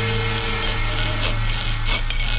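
A radio sound effect of a hand file rasping on an iron chain link, in even back-and-forth strokes about three a second. The tail of a music bridge fades out in the first half second.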